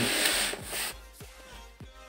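Cardboard box rubbing and scraping as it is handled, a noisy rustle for about the first second, then much quieter with a few faint knocks.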